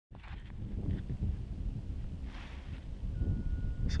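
Low, irregular rumble of wind buffeting the camera microphone, mixed with handling noise as the camera is turned around. A faint steady tone comes in briefly near the end.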